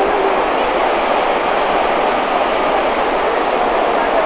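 Loud, steady rushing of a fast mountain torrent of white water pouring over a road and rocks.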